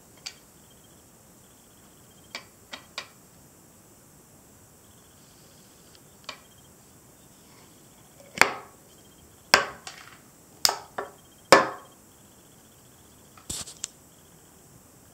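Miniature toy slot machines being handled on a stone countertop: a series of sharp, separate clicks and knocks, a few quiet ones early and louder ones in a run about two thirds of the way through, with a faint, high, intermittent beeping in the background.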